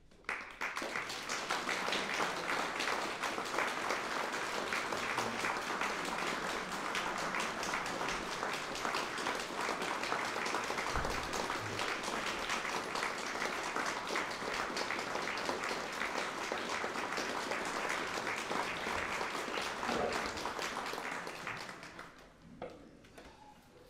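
A small audience of a few dozen people applauding: dense, steady clapping that starts abruptly and dies away near the end.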